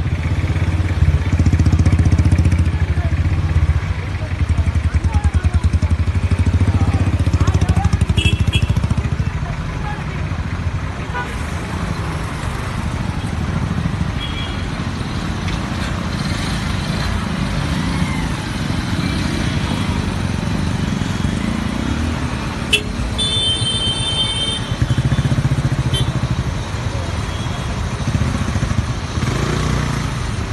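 Diesel engine of a private bus labouring up a hill road close alongside: a steady low rumble with road and traffic noise, loudest in the first several seconds.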